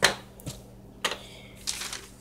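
Items being handled on a wooden table: a sharp click at the start and a few lighter knocks as small plastic eyeshadow compacts are picked up, then a brief rustle of a paper receipt near the end.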